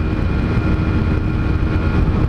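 Honda CG Titan's single-cylinder engine running flat out at top speed under a steady rush of wind, held against its rev limiter, which cuts the power.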